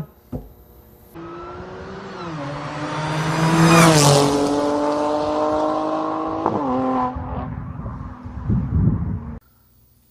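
A car engine revving: its pitch climbs to the loudest point about four seconds in, holds, then drops back and dies away.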